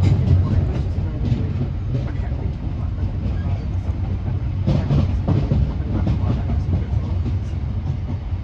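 Inside a moving train carriage: a steady low rumble, with clicks and knocks from the wheels running over the rails, most of them about five seconds in.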